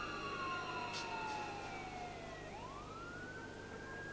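A siren wailing. Its pitch falls slowly, then rises quickly again about two and a half seconds in, over steady held tones.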